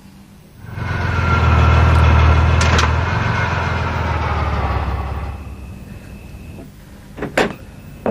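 Car engine running loudly as the car pulls up, fading out after about five seconds. Near the end come a few sharp clicks, like a door latch or lock.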